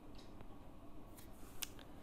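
Faint room tone in a pause of speech, with a few soft clicks, the clearest about one and a half seconds in.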